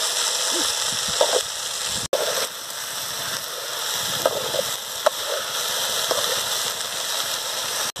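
Cluster beans sizzling as they cook in a large metal pan, with a steel ladle stirring and scraping now and then. The steady hiss breaks off briefly about two seconds in.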